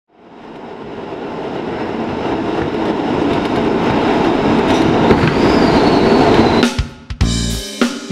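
A rushing noise swells steadily louder for about six and a half seconds, then cuts off. Near the end a jazz-funk band with drums, bass and keys comes in with sharp hits and held notes.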